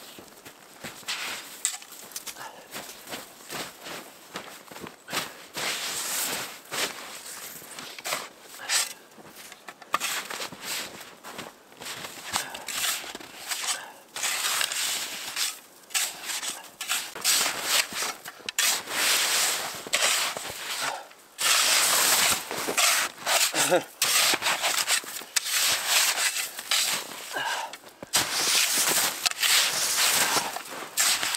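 Metal-bladed snow shovel scraping into and scooping heavy snow in a run of irregular strokes. The strokes grow louder and come faster in the last third.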